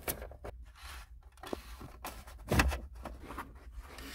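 Cables being pulled through a plastic trim channel: scattered rustles and scrapes of wire against the panel, with a louder thump about two and a half seconds in.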